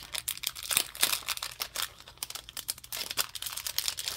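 A clear plastic packaging sleeve crinkling as it is handled, heard as a dense run of small, irregular crackles.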